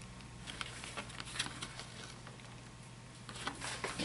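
Faint handling noise of a steel barrel nut being hand-turned with a rubber jar-gripper pad and the pad lifted off: a few light scattered clicks and rubs over a low steady hum.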